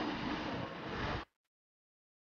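A Kia Rio learner car creeping backward into a parking bay at idle, heard as a low steady noise with some hiss. The sound cuts off abruptly a little over a second in, leaving dead silence.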